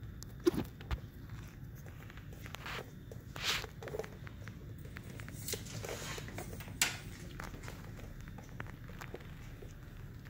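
Soft, scattered swishes and rustles a second or so apart from eyebrow grooming close to the face: a brow brush stroking the hairs and thread work, with a few sharper ticks among them.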